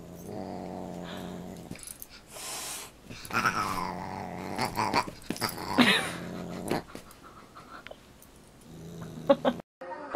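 A dog growling in low spells of a second or two while play-fighting with a Siamese cat, with a few short higher cries that bend in pitch between the growls. It is play growling during a boxing-style scuffle, not a real fight.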